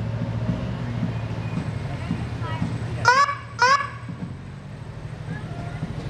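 Emergency vehicle sirens blipped in short electronic whoops, two quick ones about three seconds in, each rising and then dropping in pitch, over the steady low rumble of slow-moving engines.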